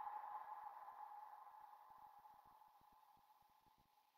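A faint, steady, single-pitched tone fading away over about three seconds into near silence.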